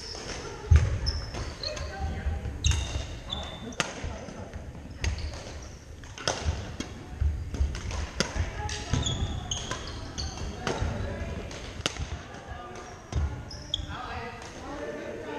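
Badminton rackets striking a shuttlecock in a rally, sharp cracks roughly once a second. Sneakers squeak on the hardwood gym floor and footfalls thud between the shots.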